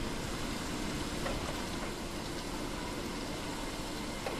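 Steady low rumble with an even rushing hiss and a faint steady hum, the machine-and-water noise of a fishing boat running at sea.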